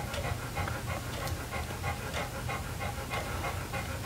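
A dog panting close by, in quick, even breaths.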